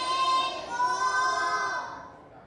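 A class of young children spelling a word aloud in unison, drawing each letter out into a long sing-song call, two held calls in all; the sound fades near the end.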